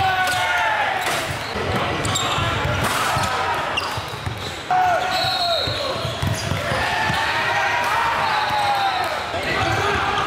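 Live basketball game sound in a gym: a ball bouncing on the hardwood court, with players and spectators calling out and the echo of a large hall.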